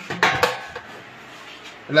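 A couple of short knocks from a Sokany air fryer's basket being handled and fitted within the first half second, then faint room tone.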